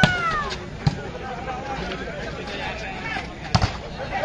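A volleyball struck hard during a rally: a loud slap at the start, a lighter one just under a second in, and another loud slap near the end, over steady crowd chatter. A high shout rises and falls right at the start.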